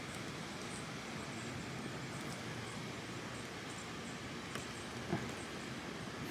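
Faint steady outdoor background hiss, with two light clicks about four and a half and five seconds in as a plastic action figure is handled and set down on a wooden table.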